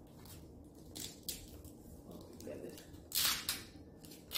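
Hook-and-loop (Velcro) fastener being pulled apart, a short rasping rip about three seconds in, after a few lighter rustles of tulle being handled.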